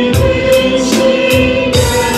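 Worship team of men and a woman singing a Chinese worship song together into microphones, with piano accompaniment and a steady beat.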